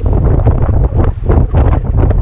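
Strong gusty wind buffeting the microphone: a loud, fluctuating rumble.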